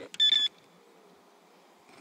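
A single short electronic beep, steady in pitch and about a third of a second long.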